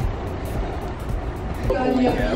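Low, steady rumble of street noise.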